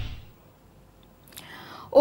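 The tail of a news theme-music sting dies away, then after a short pause a woman draws a breath about a second and a half in, just before she starts to speak.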